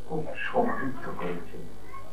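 A man speaking into a handheld microphone, with a high-pitched meow-like sound mixed in.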